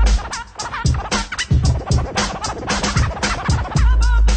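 Late-1980s hip hop instrumental: a drum beat with deep bass thumps and rapid turntable scratching over it.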